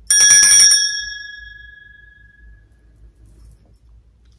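Small brass hand bell shaken rapidly for under a second, then left to ring out, its tones fading away over about two seconds.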